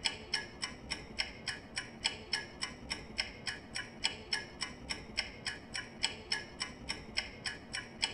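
Ticking clock sound effect used as a countdown timer, giving a rapid, even tick several times a second while the time to answer the quiz question runs out.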